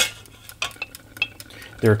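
Glass pot lid set down onto a steel pot with one sharp clink. Faint scattered ticks and a low steady hum follow.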